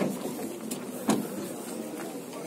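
Two sharp knocks about a second apart, the second one louder, over a faint background murmur.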